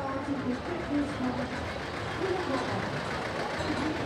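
Old tractor engine running slowly as it tows a float past, under the chatter of a crowd.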